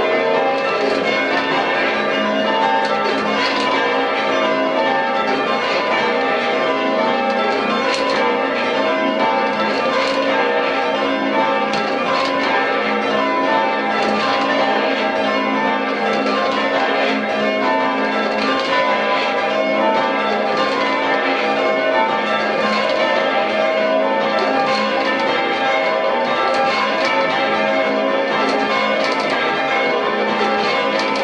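A ring of church bells (tenor 8-3-3 cwt) being rung down in peal: the bells strike one after another in continuous, steady rounds as they are lowered together, heard from the ringing chamber below.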